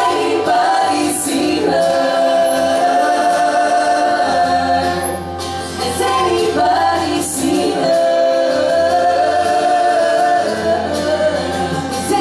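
Live acoustic pop performance: a woman and a man singing together into microphones over an acoustic guitar, holding long notes twice.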